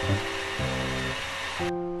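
Light background music with plucked notes over the steady whirring of a KitchenAid stand mixer whisking cream. The mixer noise cuts off suddenly near the end, leaving only the music.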